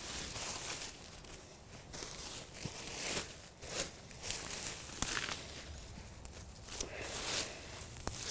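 Gloved hands sweeping and scraping dead leaf litter off the forest floor: a run of rustling swishes with a few light clicks.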